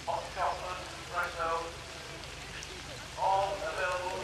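Indistinct talking in three short bursts over a steady hiss of rain.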